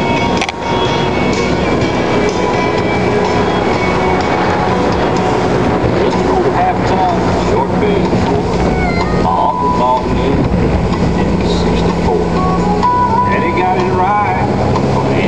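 Small motorboat running steadily through choppy water, with wind and engine noise filling the sound. A song with a singing voice plays faintly over it.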